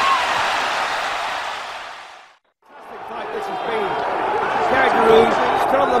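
Arena crowd noise with shouting voices at a boxing match, fading out to silence about two and a half seconds in, then a second crowd fading back in with voices.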